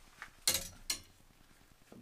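Faint, brief handling sounds: a short soft rush about half a second in and a sharp click just before one second, then near silence.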